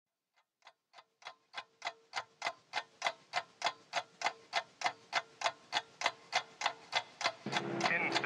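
A clock ticking, about three ticks a second, fading in from silence and growing louder. A held low chord of several steady tones swells in just before the end.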